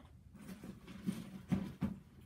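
Small toddler shoes being set into a fabric duffel bag: faint rustling handling, then two soft thumps close together near the end.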